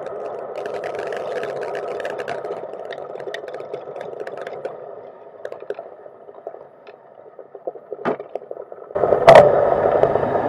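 Cargo-bike road noise carried through the frame into a hard-mounted camera: tyres rolling over paving with rattling and clicking of the bike, quieter for a few seconds with a sharp knock, then a sudden louder rumbling begins about nine seconds in as the bike rolls over cobblestones.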